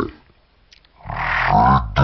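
After about a second of near quiet, a deep, drawn-out cartoon pig grunt starts about a second in, its pitch lowered by slowing the audio.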